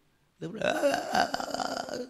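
A man making a drawn-out guttural sound in his throat, starting about half a second in, mimicking a person who cannot speak.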